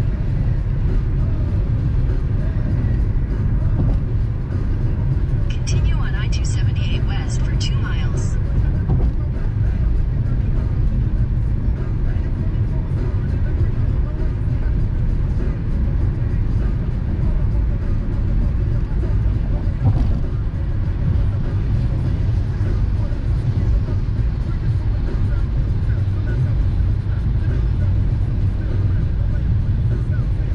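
Car cabin road noise: a steady low rumble of engine and tyres on a wet, slushy highway, heard from inside the moving car. A brief cluster of sharp clicks comes about six to eight seconds in.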